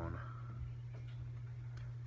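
Steady low hum with a couple of faint, light clicks from a plastic collectible figure being handled.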